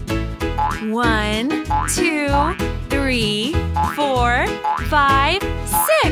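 Children's music with a steady beat, over which six springy cartoon boing sound effects come about once a second, each a swooping rise and fall in pitch, one for each number counted.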